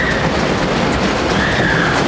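Log flume ride running: a steady rattling rumble from the ride with rushing water, as the boat travels along the top trough.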